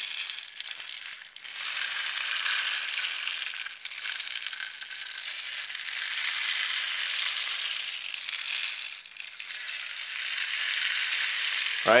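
Short wooden rain stick being slowly rotated. Its filling trickles through in a continuous rain-like rush that dips briefly three times as the stick turns. Slow rotation is used here to draw a longer, fuller sound from a short rain stick.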